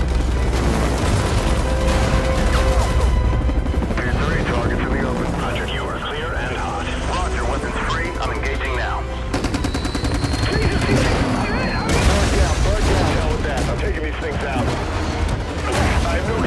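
Action-film battle soundtrack: rapid gunfire and booms over a continuous deep rumble, mixed with music and shouting voices. A stretch of fast, evenly spaced shots comes just past the middle.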